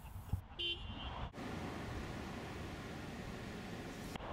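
Steady outdoor background noise, an even rumble and hiss, with a brief high-pitched call or tone about half a second in.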